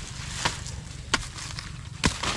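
Two sharp machete chops into a banana stem, less than a second apart.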